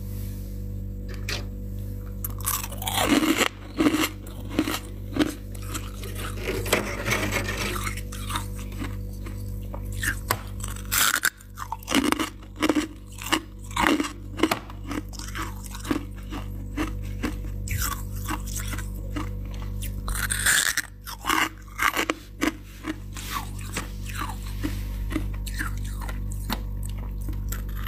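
Mouth crunching and chewing freezer frost close to the microphone: a long run of sharp crunches, about one to two a second, with short pauses, over a steady low hum.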